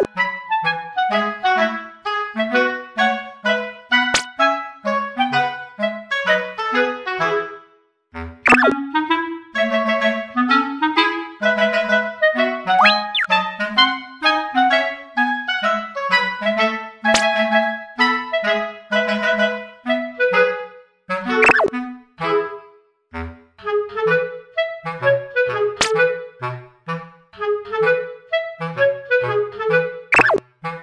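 Background instrumental music: a woodwind melody in short, quick notes over a lower line, breaking off briefly about eight seconds in, with a few quick sliding notes.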